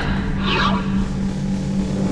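A whoosh sound effect sweeping downward about half a second in, over a sustained low tone from the soundtrack.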